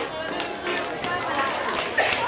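Children's voices and chatter over music.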